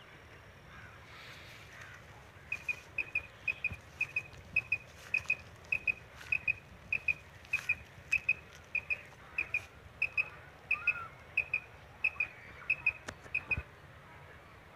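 Quail call (tabcha) sounding a quail-like double note, a short high pair of chirps repeated at an even pace, about one and a half pairs a second, from a couple of seconds in until near the end. It is a lure calling wild quail toward the net.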